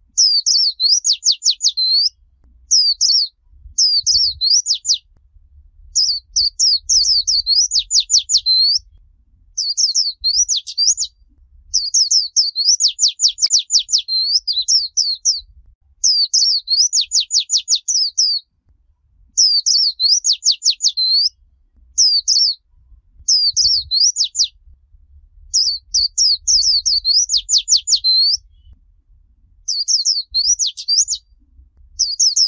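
White-eye (vành khuyên) singing the 'líu chòe' song style: high, rapid warbled phrases of sweeping notes and fast trills, each a second or two long, repeated over and over with short pauses between.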